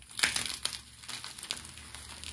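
Soft white chalk blocks crushed and crumbled to powder between bare hands: a loud crunch just after the start, then smaller crumbling crunches about half a second and a second and a half in.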